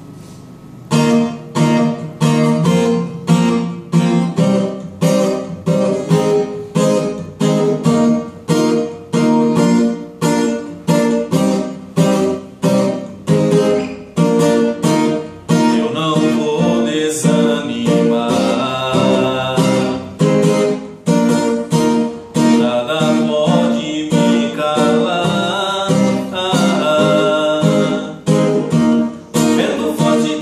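Acoustic guitar strummed in a steady rhythm, beginning about a second in, playing a gospel sertanejo song; about halfway through a man's voice comes in singing over it.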